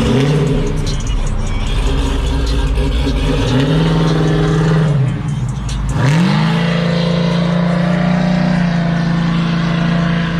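A 1973 Chevrolet Caprice's V8 accelerating hard as the car pulls away. The engine note climbs and holds, drops off briefly about five seconds in, then climbs sharply again and holds steady.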